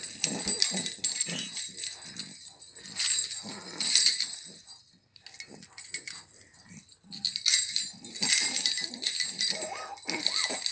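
Jingle-bell baby rattle (jhunjhuna) shaken in several bursts, its small metal bells jingling, along with a baby's short babbling and squealing sounds.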